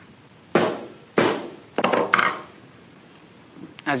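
A soft-faced mallet striking a videoscope's flexible insertion tube lying on a tabletop: four sharp knocks within about a second and a half, the last two close together.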